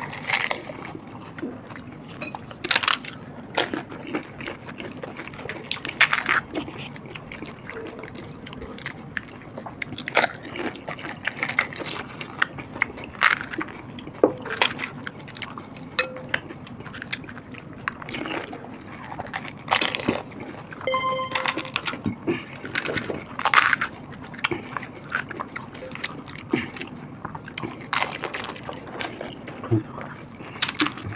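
Pani puri being eaten: crisp hollow puri shells crunching as they are bitten, with wet slurping of the spiced pani water and chewing, in irregular bursts. A short beep-like tone sounds about twenty seconds in.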